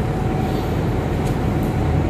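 Steady low rumble of room noise with a faint constant hum underneath, unchanging through a pause in the talk.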